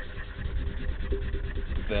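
A felt-tip marker rubbing back and forth on paper as a letter is coloured in, over a steady low hum.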